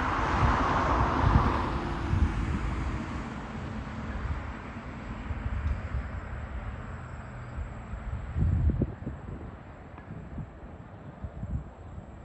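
A road vehicle passing, loudest in the first two seconds and then fading away. Wind rumbles on the microphone throughout, with a stronger gust about eight and a half seconds in.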